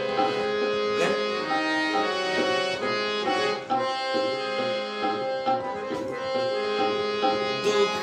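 Harmonium playing a slow melodic phrase in Raag Todi, its reeds holding one note after another over a steady low drone.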